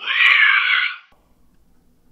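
A harsh, raspy shriek coming over the phone line, thin and tinny, lasting about a second.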